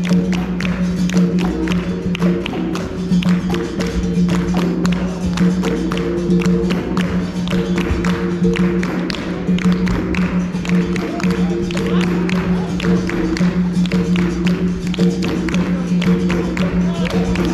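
Capoeira roda music: a berimbau sounding two alternating notes over an atabaque drum, with hand clapping from the circle as dense sharp claps throughout.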